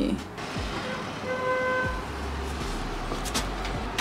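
Low outdoor rumble of distant traffic, with one short steady horn toot lasting under a second that starts about a second in.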